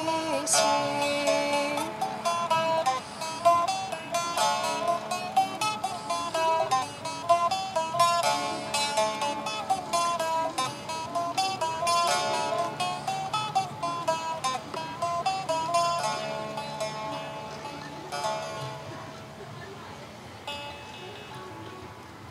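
A plucked string instrument playing a fast instrumental passage of a Greek folk tune, with rapidly picked melody notes, dying away over the last few seconds.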